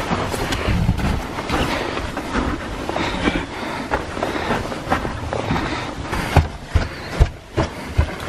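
Footsteps on a packed-snow floor with the rustle of winter jackets as people walk through a snow tunnel, making a continuous noise full of short irregular steps. There are a few sharper knocks in the second half.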